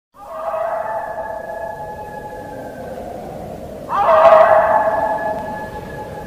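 Eerie horror-intro sound: two long, shrill cries held on several pitches at once. The second begins about four seconds in and is louder.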